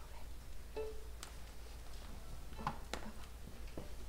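Quiet, scattered small sounds of a string orchestra readying to play: soft clicks and knocks of instruments and bows being raised, and a stray short string note about a second in, over a low steady hum.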